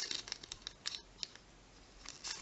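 Shiny plastic wrapper of a sticker packet crinkling and rustling as the stickers are slid out of it by hand, a run of short crackles in the first second or so, then quieter.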